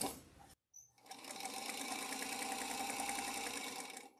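Sewing machine stitching a seam through quilting cotton, starting about a second in and then running steadily at an even speed.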